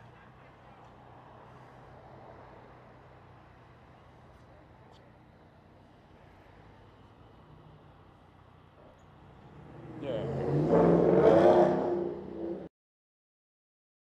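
Faint steady engine hum in a motorcycle lot. About ten seconds in, a nearby motorcycle engine revs up loudly for around two seconds, then the sound cuts off abruptly.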